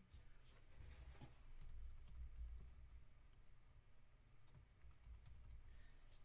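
Faint typing on a computer keyboard, soft scattered key clicks over a low room hum.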